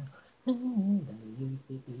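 Isolated a cappella singing voice with no instruments. After a brief pause, a louder note comes in about half a second in and slides down, followed by short held notes.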